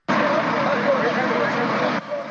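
Field recording that starts abruptly: steady, loud vehicle noise with a mix of voices in the background.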